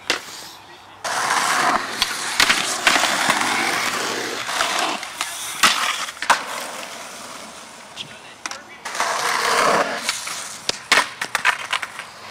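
Skateboard wheels rolling over concrete, broken by several sharp clacks of the board striking the ground and a concrete ledge during a trick attempt, then the loose board rolling away.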